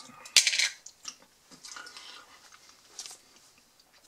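A small plastic tub set down on a wooden tabletop with one short knock near the start, then faint chewing and small mouth noises while a piece of black garlic is eaten.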